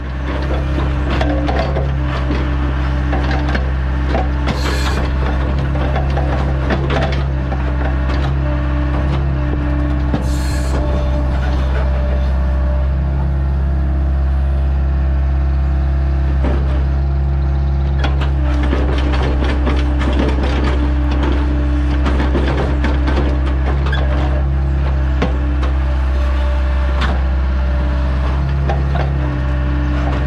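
Compact excavator engine running steadily under hydraulic load, with its grapple working a pile of soil and stones, giving many small knocks and scraping clatters.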